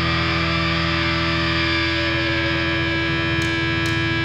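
Distorted electric guitar holding a sustained chord that rings on steadily, with a couple of light high ticks near the end.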